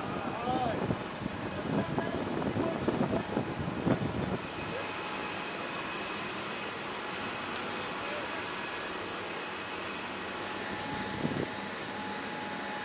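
Steady high-pitched turbine whine over a rushing hum of aircraft running on a flight line, growing more prominent about four seconds in. People talk indistinctly over it in the first few seconds.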